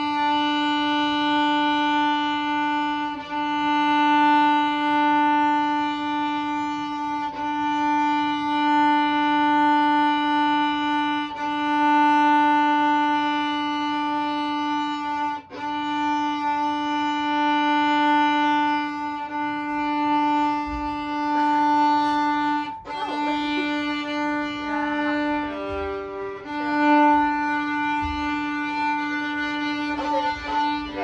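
Violin playing its open D string with long, steady bow strokes, one sustained note with a bow change about every four seconds. Near the end the note briefly breaks up and a higher note sounds before the open D returns.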